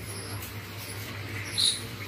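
Thin plastic bag rustling lightly as it is handled and opened, with one short high-pitched squeak about one and a half seconds in, over a steady low hum.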